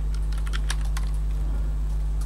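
Computer keyboard typing: a quick run of keystrokes in the first second as a shell command is edited and entered. A steady low electrical hum sits underneath.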